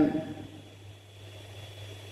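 The tail of a man's spoken word fading out, then a pause holding only a steady low hum and faint room noise.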